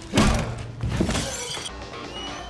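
Film fight sound effects over a music score: a loud hit with a crash just after the start, and a second hit about a second in. The crashing cuts off sharply near the end.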